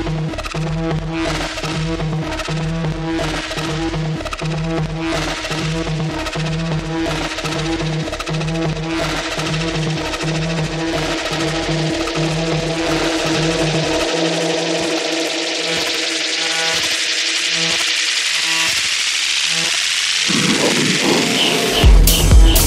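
Techno track with a steady kick-drum beat and bassline that drop out about two-thirds of the way in, leaving a build-up. A rising noise sweep climbs in pitch over the last several seconds, and the full beat crashes back in at the very end.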